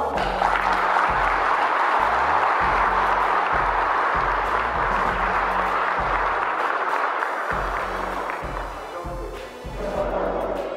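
A group of people applauding steadily, dying away near the end, over background music with a deep bass pulse.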